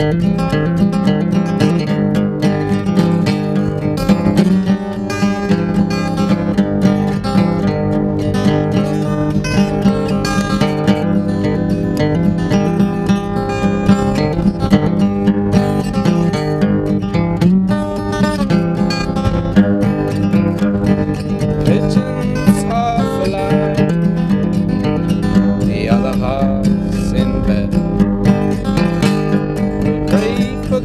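Acoustic guitar strummed steadily: the instrumental opening of a song, with no singing yet.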